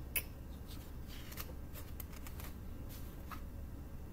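Paper pages of a picture book being handled and turned: soft rustles and a few faint taps scattered through, over a low steady hum.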